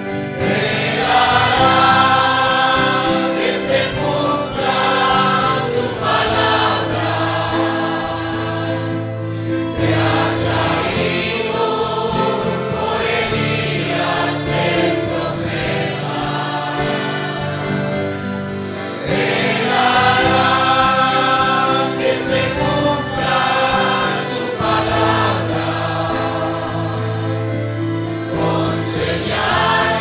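A congregation singing a worship hymn together as a choir of many voices, in sustained phrases. The singing swells louder about two-thirds of the way through.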